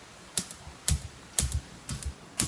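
Pulsair mixing system firing compressed-air pulses into a vat of fermenting grape must: a sharp pop with a low thud, repeating about twice a second.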